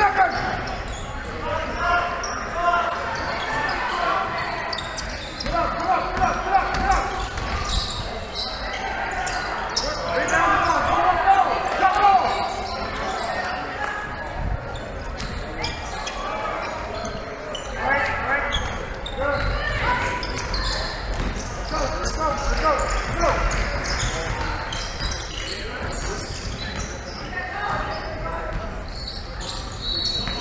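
A basketball bouncing on a hardwood court in a large echoing gym, with voices calling out throughout the play.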